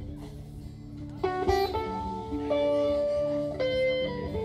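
Live band music. After a brief dip, a lead melody of long held notes comes in about a second in and steps between pitches over a steady bass.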